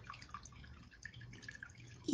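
Near silence: very faint room tone with a low steady hum and scattered faint small ticks.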